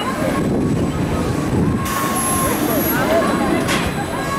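Indistinct distant voices over a steady low rumbling noise.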